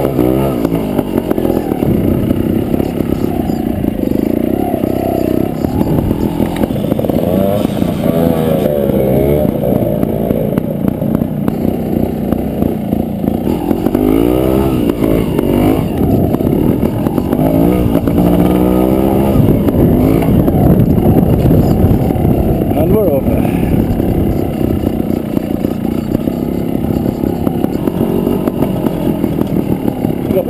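Trials motorcycle engine close to the microphone, revving up and down repeatedly as the throttle is worked over steep mounds and banks.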